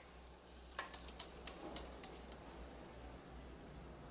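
Quiet room tone with a low steady hum, and a short run of about six faint clicks or ticks between about one and two seconds in.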